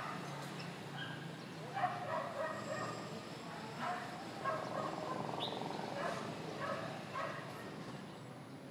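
Tennis ball struck back and forth with rackets in a rally on an outdoor hard court, a sharp hit about two seconds in. Repeated short barking calls sound in the background through most of it.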